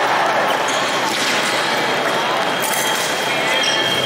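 Busy fencing hall: thuds of footwork on the piste and voices from around the hall. A steady high electronic tone comes in about a second in and grows louder near the end.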